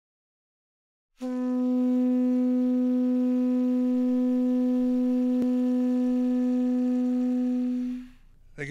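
A single steady low tone with a row of overtones comes in about a second in and holds unwavering in pitch and loudness, then fades away at the end. A faint click is heard about five seconds in.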